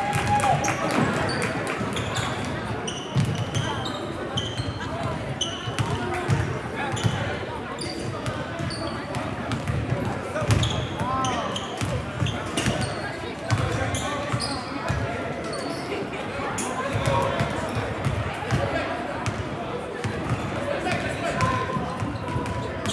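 Several basketballs bouncing irregularly on a hardwood gym floor during warm-up dribbling and shooting, echoing in a large gymnasium, with short high squeaks and chatter of people in the gym.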